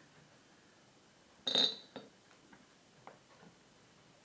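A short clatter with a brief ring about a second and a half in, then a few faint ticks: frozen sloes and a metal box grater being handled.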